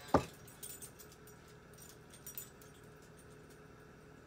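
A sharp click just after the start, then a few faint light clicks and taps over quiet room tone.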